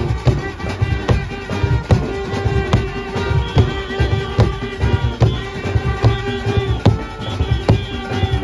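Junkanoo band playing: a large goatskin drum beaten by hand at close range drives a fast, dense rhythm, with brass horns holding sustained notes of a melody over it.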